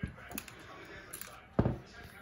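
Hand staple gun firing staples through thick upholstery fabric to hold it down: a sharp snap at the start and a louder one about a second and a half later.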